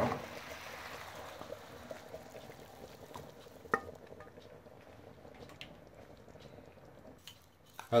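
Fried meatballs scraped from a frying pan into a pot of simmering stew with a wooden spatula: a soft hiss of liquid that fades over the first second, then a low, steady bubbling and sizzling. A single sharp knock comes about halfway, most likely the spatula striking the pan or pot rim.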